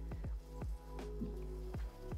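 Soft electronic background music: a held low bass note under short notes that drop in pitch like water drips, a few each second.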